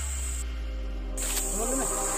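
Steady high-pitched drone of insects that cuts out for under a second about half a second in and then returns, over a low steady rumble.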